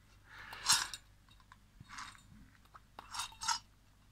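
Young miniature rabbits crunching dry food pellets from a metal bowl, heard as several short bursts of crunching.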